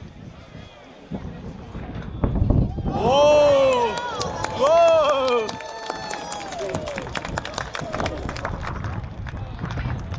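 A low, deep boom about two seconds in, the sonic boom of the returning SpaceX rocket booster, followed by loud excited shouts of 'whoa' from onlookers and a spell of clapping.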